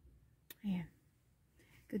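A pause in a woman's talk: faint background with a single sharp click about half a second in, a brief murmured vocal sound, then she starts speaking again near the end.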